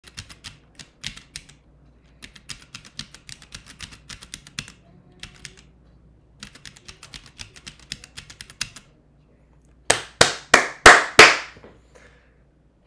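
Uni mechanical stenography keyboard chorded at speed: quick flurries of clacking key strokes, several keys pressed together per stroke, broken by two short pauses. Near the end come six much louder, sharp strikes with a ringing tail, about three a second.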